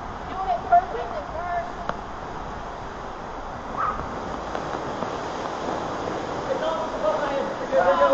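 Water rushing through an enclosed water slide tube as riders slide down it, a steady wash of noise, with short shouts near the start and again near the end.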